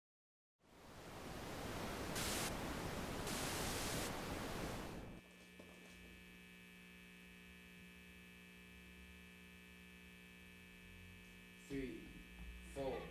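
A rush of hiss fades in and holds for about four seconds, then cuts off to a faint, steady electrical mains hum with a thin high whine above it. A short pitched sound comes in near the end.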